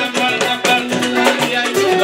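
Live Senegalese band music with fast, dense percussion and a shaker, over pitched instruments holding a long low note through the middle.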